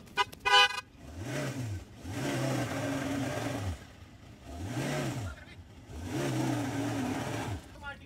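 Ford Endeavour 3.2 five-cylinder diesel revving up and dropping back four times in a row as the SUV, stuck deep in mud, strains to pull itself out.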